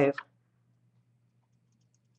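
Near silence: faint steady low hum of room tone, with a few very faint ticks near the end.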